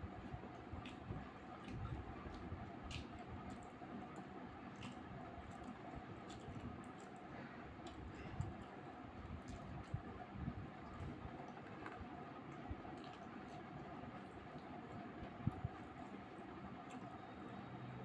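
Faint close-miked eating sounds: chewing of roti and curry eaten by hand, with scattered small mouth clicks and smacks over a steady faint background hum.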